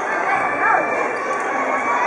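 Children's high-pitched voices calling out over the steady hubbub of a busy sports hall, with one rising-then-falling shout a little under a second in.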